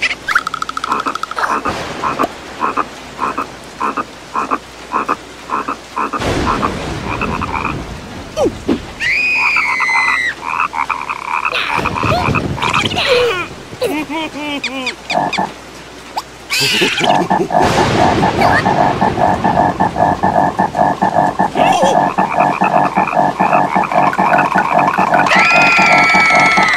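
Cartoon frog croaking: a run of evenly spaced croaks at first, then a fast, dense rattling croak through the last third, with brief squeaky cries from the cartoon larvae in between.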